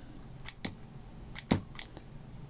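About five small, sharp clicks and ticks, spaced unevenly, from the small tone-capture pedal being pressed and handled.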